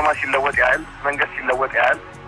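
Speech only: a narrator talking steadily in Amharic.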